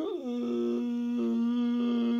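A man's voice holding one long, steady note, a drawn-out open-mouthed yell after a brief wobble in pitch at the start.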